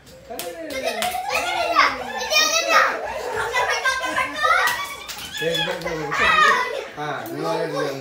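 A group of young children calling out and shouting excitedly over one another while playing a running game, their high-pitched voices rising and falling without a break.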